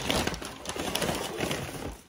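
Brown paper takeout bag crinkling and rustling right by the microphone as it is handled, a dense run of crackles.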